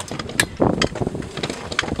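Footsteps and rustling on dry grass, a string of crisp crunches a few tenths of a second apart, with wind rumbling on the microphone.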